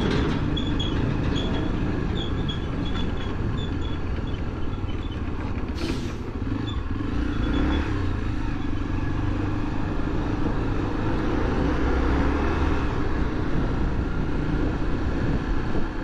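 Honda XRE300's single-cylinder engine running at low speed in slow, stop-and-go traffic, close behind and then alongside a truck, with steady traffic rumble. A short hiss comes about six seconds in.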